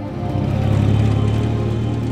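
Motorcycle-with-sidecar engine running as it passes close by and pulls away, heard over a low music soundtrack. It grows louder about half a second in.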